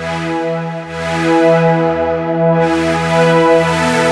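VPS Avenger software synth playing the accordion-like pad preset "PD Accordeon 8000" from the Euro Party 2 expansion, as sustained chords played on a keyboard. The notes are held, with the chord and bass changing about twice a second.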